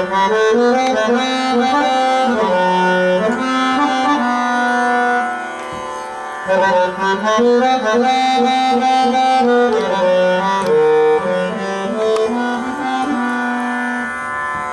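Harmonium playing a slow, free-rhythm aalap in Raga Ahir Bhairav: sustained reedy notes moving step by step through melodic phrases, easing off briefly about six seconds in before the next phrase.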